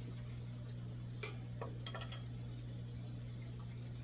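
A steady low hum from running aquarium equipment, with water movement and a few light clicks about one to two seconds in.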